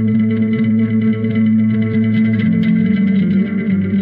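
Electric guitar played through effects pedals in a post-rock piece, sustained chords ringing over a low line, with a change of chord about two and a half seconds in.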